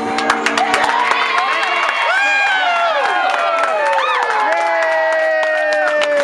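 A party group clapping and cheering around a birthday cake, with children's high voices shouting and whooping over rapid, uneven hand claps.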